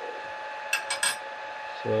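Light metallic clicks, three or four in quick succession about three-quarters of a second in, over a steady faint hum: metal parts of the lathe setup being handled.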